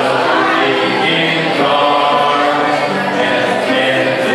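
A group of voices singing a hymn together, in long held notes that move from one pitch to the next in a slow, steady melody.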